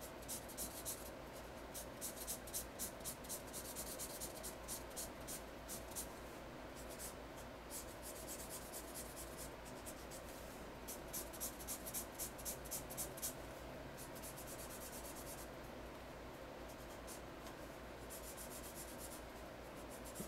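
Teal felt-tip marker scratching on paper in runs of quick back-and-forth strokes as a letter is coloured in, with a few short pauses between runs.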